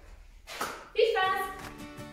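A short vocal sound, then music begins about a second in, with sustained pitched notes struck one after another.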